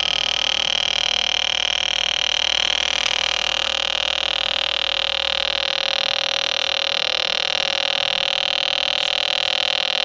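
Electronic tone circuit buzzing through its small speaker, with a pencil-drawn graphite resistor wired in. It holds one steady, buzzy pitch rich in overtones.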